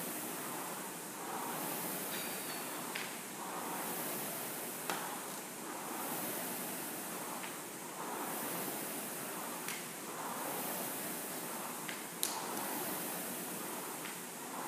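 Rowing machine's fan flywheel whooshing with each pull, a swell of rushing air about every two seconds over a steady hiss. A few sharp clicks or clanks cut in, the loudest about twelve seconds in.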